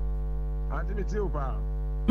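Steady electrical mains hum with many evenly spaced overtones, with a faint voice speaking briefly in the middle.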